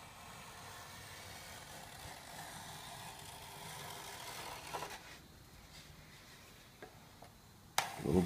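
Small hand plane shaving a wooden wing leading edge: a long, faint scraping stroke through the first five seconds, ending in a light knock. After it, quieter, with a few soft ticks.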